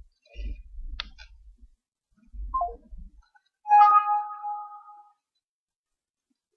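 Low rumbling and a click from a phone handset being handled as the call is hung up. About four seconds in comes a single struck, chime-like tone that rings for about a second and a half.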